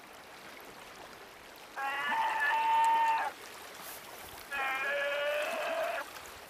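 Brown bear cub bawling: two long, bleating calls about a second and a half each, the second lower in pitch, over the steady rush of a river.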